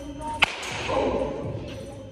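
A single sharp crack of a baseball bat hitting a pitched baseball, followed by about a second of noisy rush.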